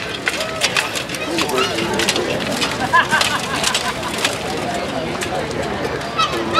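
Murmur of spectators' voices, broken by several sharp clanks of steel swords striking armour as two mounted knights fight.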